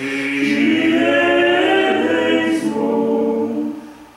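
Male vocal quartet singing a cappella in close harmony, holding chords that shift in steps. The singing fades to a short break near the end.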